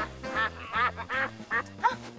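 A run of short duck quacks, a cartoon-style sound effect, over background music with a steady bass beat.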